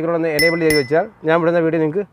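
A man talking, and about half a second in two quick clicks with a bright ringing chime: the click-and-ding sound effect of an on-screen subscribe-button animation.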